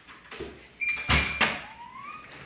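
A sliding glass balcony door is pushed open about a second in, giving a short rumbling slide with a brief high squeak. A short rising tone follows near the end.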